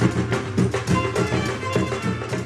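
A fanfare band playing: saxophones and a clarinet holding melodic lines over a busy, driving drum rhythm.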